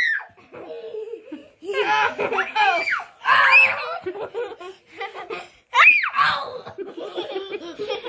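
Young children laughing and squealing in several high-pitched bursts during rough play, the loudest about six seconds in.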